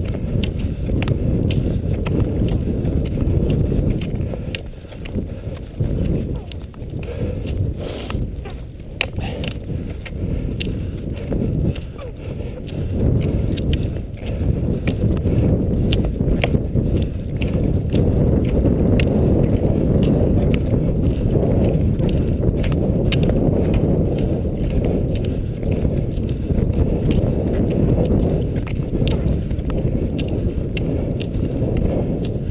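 Cross-country skis sliding over a thin layer of snow, with a steady rhythm of sharp clicks from the ski poles planting, under a constant low rumble of movement and wind on the camera's microphone.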